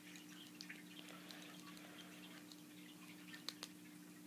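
Near silence: room tone with a steady low hum and a few faint clicks of small plastic toy parts being handled, two of them near the end.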